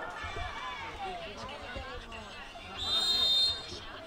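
Background crowd voices and chatter, then about three seconds in one steady, high referee's whistle blast lasting under a second, the loudest sound here, signalling the kickoff after a goal.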